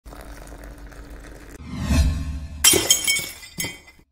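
Sound effect of breaking glass. A rising whoosh builds, then about two-thirds of the way in comes a loud crash of shattering glass with ringing shards, and a smaller crash near the end.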